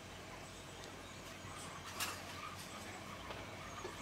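Quiet outdoor ambience: a faint, steady background hiss, with one brief click about two seconds in.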